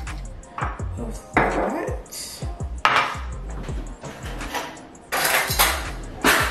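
Kitchen clatter: bottles, a bowl and utensils being handled and set down on a countertop. There are scattered clinks and knocks, with a few louder clatters about a second and a half, three and five seconds in.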